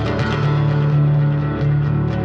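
Instrumental music with held bass and chord notes over a steady light beat of about four ticks a second, the music growing fuller at the start.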